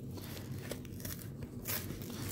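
A cardboard trading-card box being pried and torn open by hand along its perforated edges: faint scraping and tearing of card stock, with a short sharper rip near the end.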